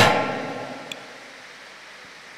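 The echo of a just-shouted phrase dying away in a large hall over about a second, followed by a steady faint hiss of room noise with one small click about a second in.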